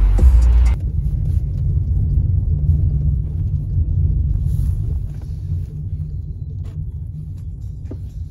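Music with a beat cuts off under a second in, leaving the low, steady rumble inside a moving car, which slowly gets quieter.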